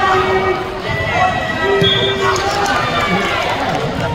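Several spectators and coaches shouting over one another at a wrestling bout, with some drawn-out yells.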